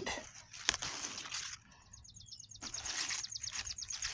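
Leaves and the felt grow bag rustling as they are handled, then a bird's rapid, high trill of evenly spaced notes lasting about two seconds.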